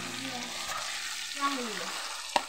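Chicken pieces deep-frying in hot oil in an iron kadai, a steady sizzle.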